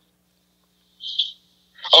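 Near silence, then about a second in a short hissy intake of breath into a close podcast microphone, just before a man starts talking.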